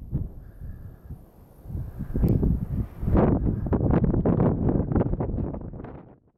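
Wind buffeting the camera's microphone in irregular gusts, a low rumble that eases off about a second in and comes back stronger from about three seconds in.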